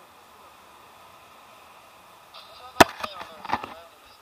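A faint steady background, then a single sharp knock about three seconds in, followed by a quick run of smaller clicks and a brief voice sound.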